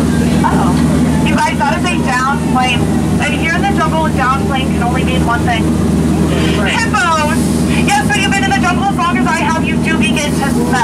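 A tour boat's motor running with a steady low hum beneath voices on board.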